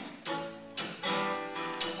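Acoustic guitar being strummed in a song's gap between vocal lines: a few strums, the last chord ringing on from about a second in.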